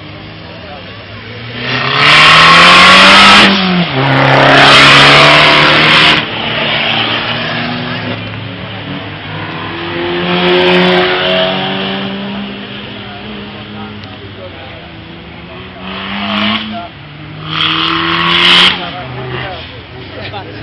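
Car engines revving on a small circuit, their pitch climbing as they accelerate and dropping off, with loud bursts of tyre squeal about two and four seconds in and again near the end.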